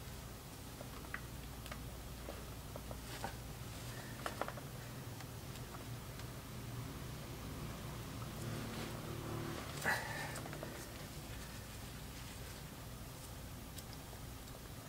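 Faint handling sounds at a brake caliper: scattered small clicks and a rag rubbing as a gloved hand wipes off spilled brake fluid, with one sharper click about ten seconds in, over a low steady hum.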